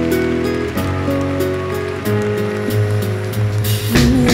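Live band music in an instrumental passage: sustained keyboard chords shifting about once a second over a bass line, with a steady hiss-like wash on top. A bright noisy swell builds near the end and leads into a louder full-band section.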